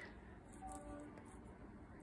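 Near silence: quiet room tone, with a faint steady hum near the middle.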